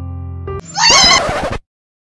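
Light keyboard music stops about half a second in and a horse whinny follows: one loud, high, wavering neigh lasting about a second, then an abrupt cut.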